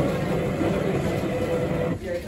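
WMF bean-to-cup coffee machine running steadily as it makes a coffee: a loud mechanical whirr and hum. The whirr drops away sharply at the very end.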